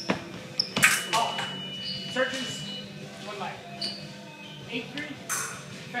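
Sabre fencing action: a sharp blade strike a little under a second in, followed at once by a steady high electronic beep from the scoring machine lasting about two seconds, signalling a touch. Shouts and further quick clicks of steel and footwork follow.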